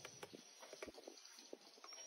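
Near silence, with faint scattered clicks and soft knocks of a stick stirring a liquid mix of mashed bananas in a plastic tub.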